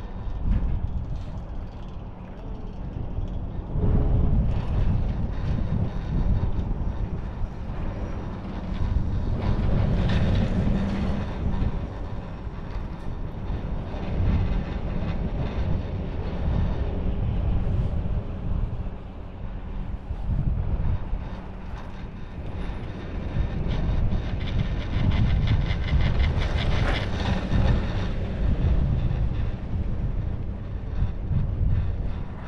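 A 1988 Doppelmayr detachable chairlift carries the chair uphill: a steady low rumble with wind buffeting the microphone. It swells and fades, with runs of rapid rattling about ten seconds in and again near the end, as the chair passes the lift towers.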